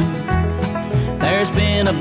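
Country band playing an instrumental fill between sung lines: a steady bass line under guitar, with a bending melodic line about a second in.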